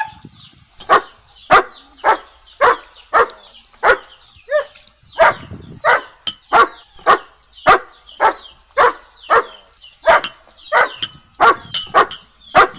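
A dog barking over and over at about two barks a second, with one brief whine about four and a half seconds in.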